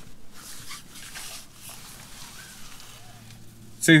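Faint rustling of fabric as a folded sunshade is pulled out of its cloth pouch and handled.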